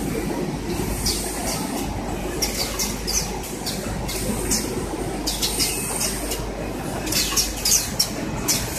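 Semi-automatic pet underpad packaging machine running: a steady mechanical clatter with short bursts of high hiss every second or so.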